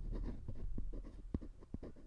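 Soft, scratchy rustling with scattered small clicks close to the microphone, one sharper click a little past halfway, as a low rumble dies away.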